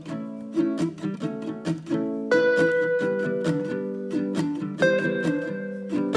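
Background music on a plucked string instrument: a quick picked melody of many short notes, with a longer held note about two seconds in.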